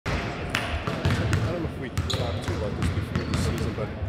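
Basketballs bouncing on a hardwood gym floor, irregular thuds in a large gym, with players' voices in the background.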